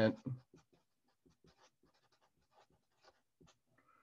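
Felt-tip marker writing a word on paper: faint, short strokes at an uneven pace.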